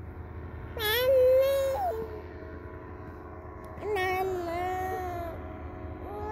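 A young child crying out in two long, wavering wails, one about a second in and a louder-then-fading second one about four seconds in, over a steady low rumble.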